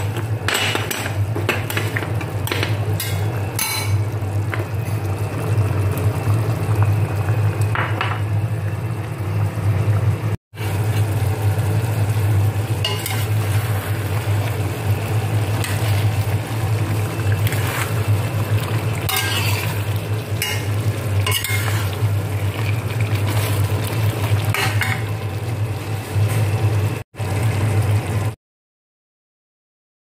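A spatula stirring and scraping chicken and potato pieces in a stainless steel pot of simmering sauce, with repeated clinks and scrapes against the pot over a steady low hum. The sound cuts out briefly twice.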